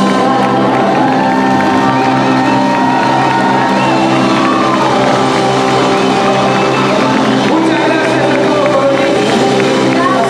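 A live band with a singer playing loudly and steadily, with a crowd clapping and cheering along.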